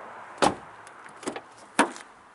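Car door latch on a 2012 Ford Mondeo estate being worked: a sharp clunk about half a second in, a lighter click a little later, and another sharp clunk near the end as the handle is pulled and the door comes open.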